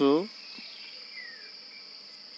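A steady, high-pitched background drone of insects, heard plainly once a short spoken word ends, with a faint falling whistle-like glide in the middle.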